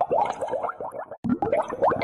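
Edited intro sound effect: a rapid run of short rising pitch glides, several a second, broken by a brief gap just past halfway.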